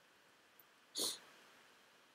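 A single short, breathy noise about a second in, over faint room tone.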